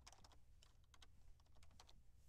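Faint computer keyboard typing: a few small clusters of quick keystrokes.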